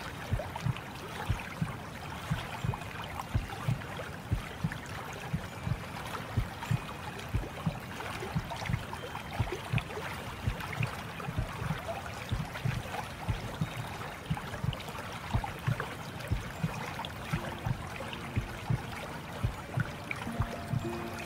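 Running water with irregular low lapping thumps, a few a second. Soft, sustained music tones begin to come in near the end.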